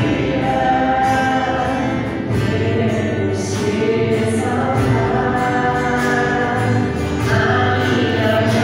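Church choir singing a hymn, many voices together holding long notes.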